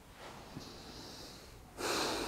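A person breathing: a soft, drawn-out breath, then a sudden, louder rush of breath near the end.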